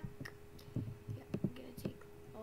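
A person whispering softly in short, scattered bits, over a faint steady hum.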